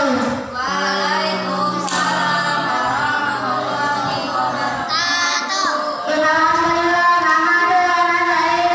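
A boy singing in a melodic chant into a handheld microphone, in long held phrases with short breaks about half a second and six seconds in.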